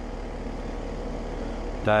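Residential outdoor air-conditioning condensing unit running: a steady low hum with an even rush of air noise over it.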